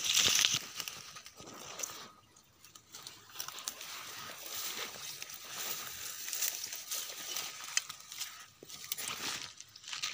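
Dry leaf litter and brittle undergrowth rustling and crackling irregularly with many small snaps, as someone moves through and handles the dry brush.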